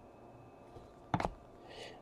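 Mostly quiet, with a brief flick of a trading card being slid off the top of a stack about a second in.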